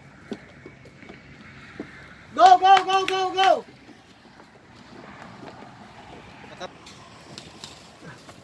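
A person's loud, drawn-out shout, held on one pitch for about a second, roughly two and a half seconds in, with a few faint clicks scattered before and after.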